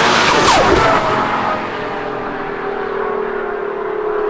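Heavily modified Nissan R35 GT-R's twin-turbo V6 pulling hard on the road in a drive-by, loudest in the first second, then settling into a steady drone.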